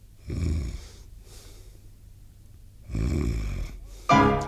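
A man snoring twice, about two and a half seconds apart, each snore a short rasping rumble, with faint breaths between them. The music stops for the snoring, a comic turn within the song.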